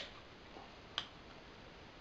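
A single light click about a second in, from a cut-open aluminium soda can and its removed lid being handled; otherwise quiet.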